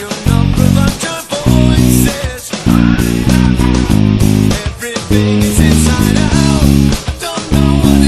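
Loud rock instrumental section with drums and electric guitar, and an electric bass played fingerstyle along with it. The band stops in short breaks several times and comes back in.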